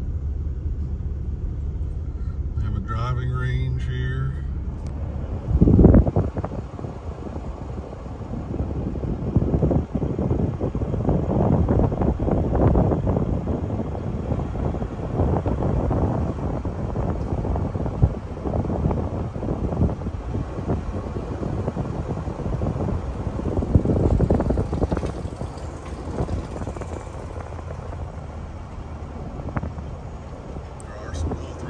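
Car driving slowly, heard from inside: a low steady engine and road hum, a loud thump about six seconds in, then an uneven rushing of wind and tyre noise for the rest.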